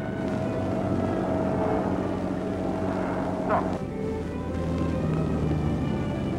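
Ship's engine and sea noise on an old film soundtrack, with a steady hum and a brief sharp rising squeal about three and a half seconds in. Orchestral score runs faintly underneath, and a deeper engine rumble builds in the second half.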